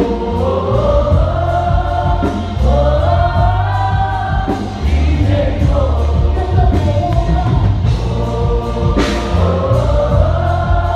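Live gospel worship band: several singers singing together in long held lines over bass guitar and a steady beat of drums and cymbals.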